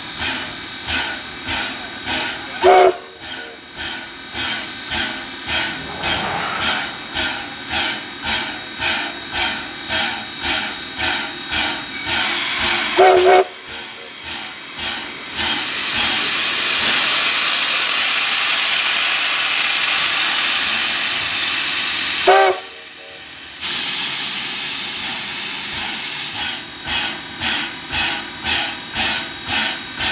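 2-8-0 Consolidation steam locomotive, No. 93, with a rhythmic pulsing of about two beats a second and three short steam-whistle toots. In the middle a loud steam hiss runs for about six seconds, then the rhythmic beat returns.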